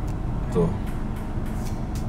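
Steady low rumble inside the cabin of a Mitsubishi Xforce compact SUV, with one short spoken word about half a second in.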